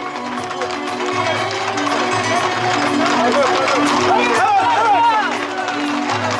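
Men shouting and calling out over music with long held notes, with the clatter of horses' hooves on the road.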